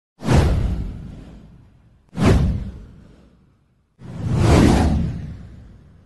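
Three whoosh sound effects from an animated title intro, about two seconds apart. Each is a sudden rush of noise that fades away over a second or two; the third swells in more gradually before fading.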